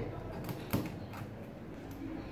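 Kitchen knife cutting off a sardine's head on a plastic cutting board: two short, faint clicks a little under a second in as the blade goes through the fish and meets the board.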